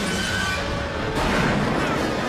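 Dramatic film score mixed with the rumble and crashes of explosions and collapsing metal, coming in suddenly after a brief drop.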